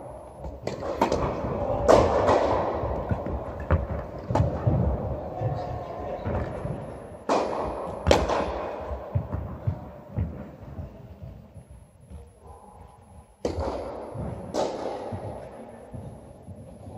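Tennis rally on an indoor court: a series of sharp ball strikes off rackets, each one echoing in the large hall, with the loudest hits about two seconds in, twice around seven to eight seconds, and twice near the end.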